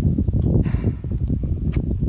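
Wind buffeting the microphone of a handheld phone, a ragged low rumble with rustling, a brief hiss about a third of the way in and a sharp click near the end.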